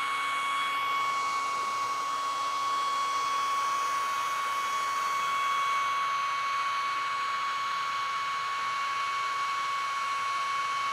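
Handheld hair dryer running steadily, blowing a column of air straight up, with a steady high whine over the rush of air.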